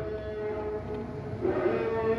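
A man's voice holding a long, steady chanted note between phrases of a melodic reading of Arabic text. It weakens in the middle and comes back, with a small dip in pitch, near the end.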